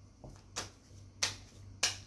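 Tarot cards being shuffled in the hands: three sharp snaps of the cards, evenly spaced about two-thirds of a second apart.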